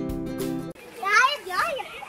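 Strummed acoustic-guitar background music that cuts off abruptly just under a second in, followed by a short, high-pitched, wavering voice.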